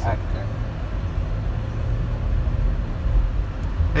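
Car interior noise while driving: a steady low rumble of engine and road noise heard from inside the cabin.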